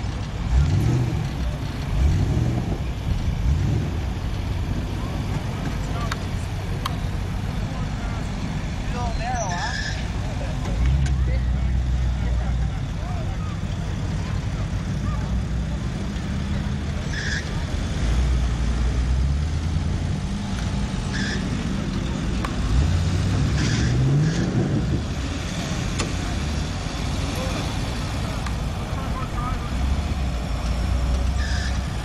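Jeep engine running at low speed on a dirt course, revving up several times near the start and again about three quarters of the way through, with steady running in between.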